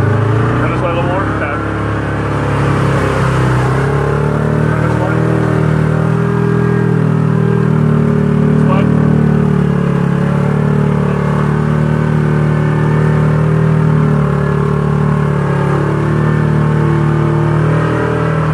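Yamaha Viking 700 side-by-side's single-cylinder four-stroke engine running steadily under way, its pitch drifting up and down a little.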